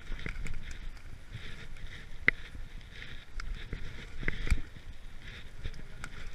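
Cannondale Scalpel 29 mountain bike rolling over dry leaf litter and fallen twigs: a constant rustle and crunch from the tyres, broken by scattered sharp clicks and knocks from twigs and the bike's chain and frame, the loudest about two seconds in and around four and a half seconds in.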